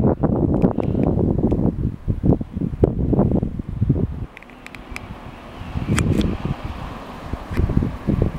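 Wind buffeting the microphone in irregular gusts: a low rumbling noise, strongest over the first four seconds, easing, then rising again about six seconds in.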